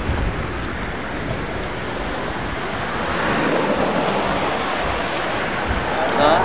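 Steady rushing city-street noise of passing traffic, swelling a little about halfway through.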